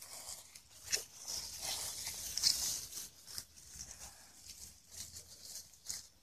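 Dry fallen leaves rustling and crunching underfoot, an uneven crackle with scattered sharper crunches as the puppies run through them.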